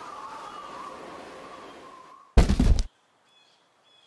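A single heavy thump about two and a half seconds in: a plush hand puppet dropping onto a wooden stage ledge. Faint high bird chirps follow near the end.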